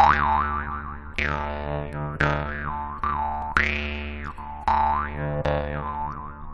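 Jaw harp (drymba) playing a melody: six twanging plucks about a second apart over a steady low drone, the bright overtone sweeping up and down between plucks.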